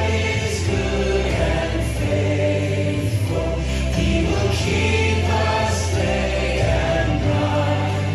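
Contemporary Christian worship song: a band with a group of voices singing held notes over a steady bass.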